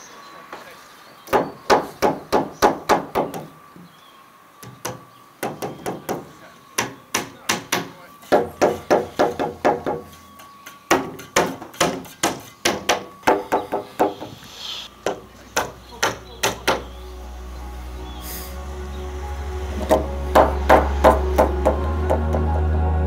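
Claw hammer driving nails through a timber batten into softwood floor joists: runs of quick, sharp blows, each run a few seconds long, with short pauses between. Background music fades in over the second half and grows louder near the end.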